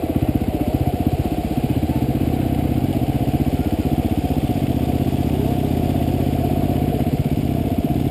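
Dual-sport motorcycle engine running at a steady low throttle with an even, unchanging beat while the bike wades through a shallow river.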